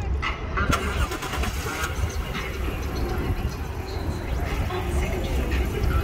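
Toyota Brevis's 2.5-litre D-4 twin-cam 24-valve straight-six started with the key and running at a quiet idle through its stock, unmodified exhaust.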